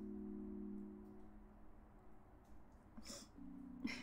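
Soft royalty-free background music for the stream: a held low chord that fades out after about a second and a half, then a new chord comes in near the end. A short hiss sounds about three seconds in.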